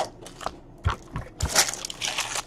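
Foil-wrapped trading-card packaging being handled: crinkling and crackling, with a few soft knocks in the middle as it is set down on the stack of boxes.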